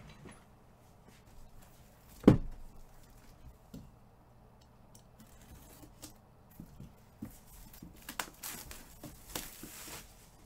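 A cardboard shipping box being handled and opened: one loud thump about two seconds in, then light clicks and scrapes, and a few short rasping noises of tape or packaging near the end.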